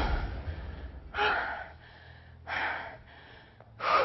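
A woman breathing hard from exertion: four sharp gasping breaths, about one every second and a half. A low thump comes with the first breath.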